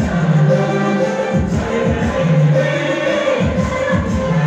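A devotional song sung by many voices over loud amplified accompaniment. It has a steady beat, with a low bass note that returns every two seconds or so.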